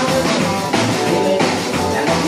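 Live rock and roll band playing: upright double bass, drum kit and acoustic guitar keeping a steady driving beat.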